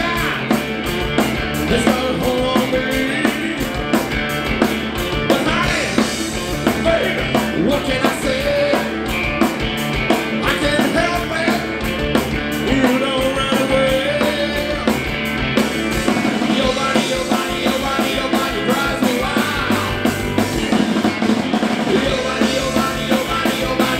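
Live blues-rock band playing, with a drum kit keeping a steady beat under electric bass and electric guitars.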